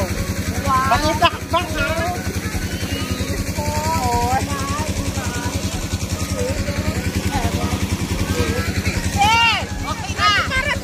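A small engine running steadily with an even low pulse, under high-pitched voices calling out now and then, loudest near the end.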